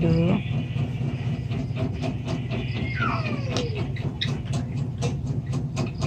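Colored pencil scratching on coloring-book paper in short, irregular strokes over a steady low hum. A brief voice is heard right at the start, and a falling whistle-like tone about three seconds in.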